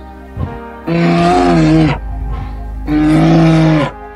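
A large animal's call, pitched and about a second long, sounding twice over background music with sustained tones.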